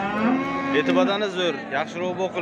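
Cattle mooing: one long, level call lasting about a second near the start.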